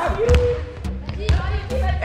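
Basketballs bouncing on a gym floor, several low thuds in a large echoing hall, with children's voices calling out.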